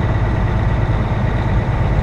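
Semi truck's diesel engine running and road noise heard from inside the cab while cruising, a steady low rumble.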